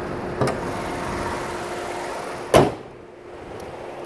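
Steady hum of a parking garage with one held tone, a light knock about half a second in, and a single loud thump a little past halfway.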